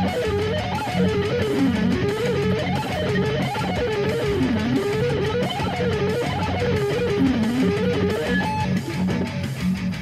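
Electric guitar through a Yamaha THR-10X amp playing a fast, strictly alternate-picked, string-skipping lick in F-sharp Aeolian, sixteenth notes at 190 BPM, over a backing track. The line rises and falls in a repeating figure a little more than once a second.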